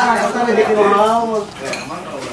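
A person's voice talking for about the first second and a half, then light clinking of plates and cutlery.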